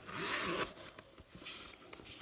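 Metal zipper on a Louis Vuitton Neverfull's interior zip pocket being run along with a rasp lasting about half a second, then a shorter, fainter pull about a second and a half in.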